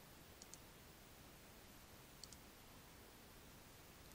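Computer mouse button clicked twice, each click a quick press-and-release pair, against faint hiss.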